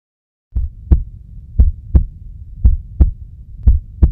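Heartbeat sound effect: four double lub-dub thumps, about one pair a second, over a low rumble, starting about half a second in.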